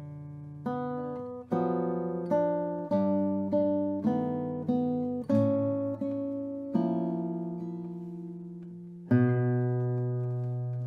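Nylon-string classical guitar played solo: a run of plucked notes and chords, a new attack roughly every three-quarters of a second, each left to ring. About nine seconds in comes a louder, low chord, the loudest moment, sustained and slowly dying away.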